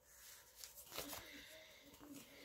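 Faint rustling of a paper sticker sheet being handled, with a few light clicks and crinkles about a second in.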